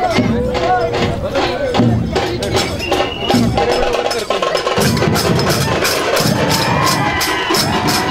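A processional drum troupe playing: large dhol drums beaten in heavy groups of strokes under a steady, fast clashing of handheld zanj cymbals, about three to four clashes a second, with voices calling out over the rhythm.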